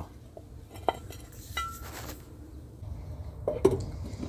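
A few light metallic clinks and knocks, one ringing briefly, as the grease cap is worked off a semi-trailer wheel hub.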